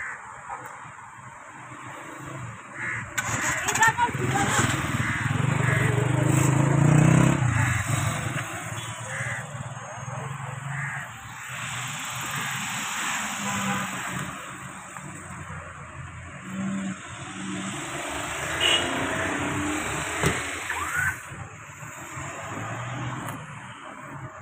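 Voices talking over the sound of road traffic, heard from inside a moving car.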